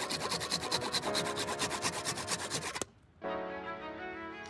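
A saw cutting through a plastic pipe in fast, even strokes, stopping just before three seconds in. Background music runs under it and carries on after the cutting stops.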